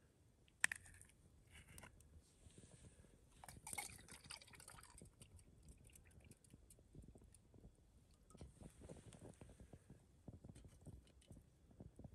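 Quiet handling of a plastic milk bottle: a sharp click about half a second in and crinkly plastic noise a few seconds later, then milk poured into a metal camp pot, with many small crackly clicks.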